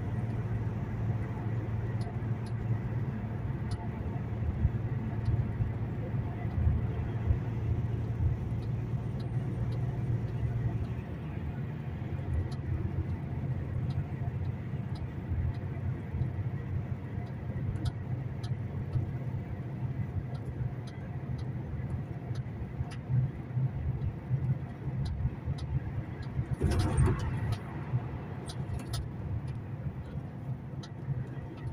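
Steady low drone of a truck's engine and road noise heard from inside the cab while driving through a road tunnel, with scattered faint clicks. Near the end comes a brief louder rush of noise lasting about a second.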